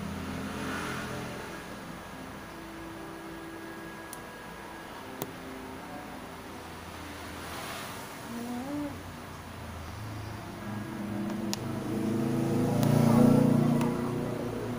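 Steady low hum of a motor vehicle's engine, growing louder about ten seconds in and at its loudest near the end, with a few faint clicks.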